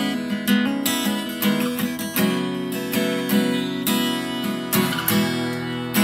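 Acoustic guitar strummed by hand, chords ringing on between the strokes.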